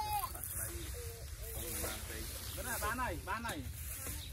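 Several people talking at a distance, with voices rising and falling most busily about three seconds in, over a steady low rumble.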